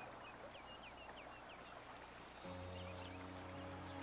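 A few short, high bird chirps in quick succession in the first half, with a couple more later. About halfway through, a steady held chord of background music comes in and carries on.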